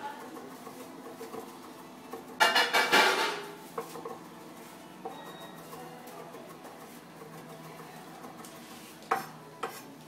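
Kitchen knife chopping green herbs on a wooden cutting board. A fast run of chops a couple of seconds in is the loudest part, followed by scattered single knocks of the blade on the board over a steady low hum.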